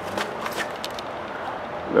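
Steady outdoor background noise with a few faint ticks in the first second.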